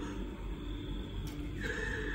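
A woman crying, with a high-pitched sobbing wail starting about one and a half seconds in, over background music.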